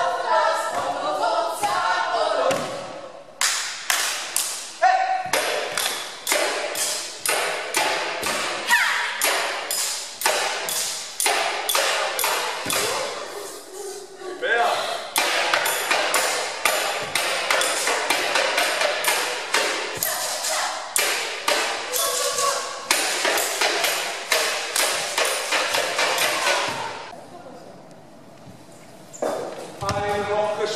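A rhythmic percussion beat of sharp hits, about two to three a second, played for a dance. Voices call out over the first couple of seconds, and the beat dies away near the end.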